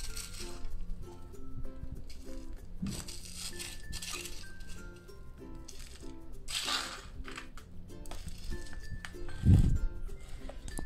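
Gritty potting mix scraped and scooped with a plastic spoon into a plant pot, in a few short rasping bursts, over soft background music of short melodic notes. A dull thump about nine and a half seconds in is the loudest sound.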